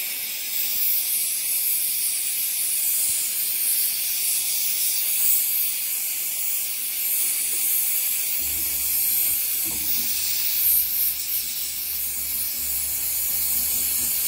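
Mini Smith oxygen-LPG torch flame hissing steadily as it melts scrap silver in a crucible, with the regulator pressure turned up high.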